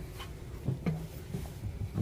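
A few faint knocks of footsteps going up metal RV entry steps into a trailer doorway.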